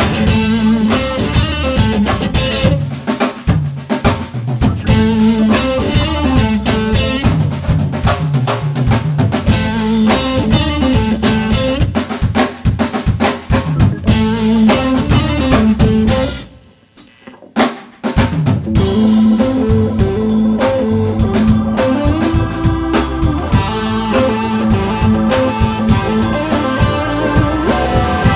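Live rock band playing an instrumental passage with electric guitar, electric bass and drum kit. About sixteen seconds in the whole band stops dead for under two seconds, with a single hit in the gap, then comes back in.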